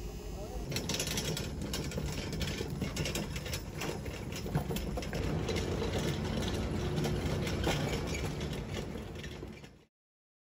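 Loaded metal utility cart being pushed, its wheels rolling and its frame and load rattling continuously. The sound cuts off suddenly near the end.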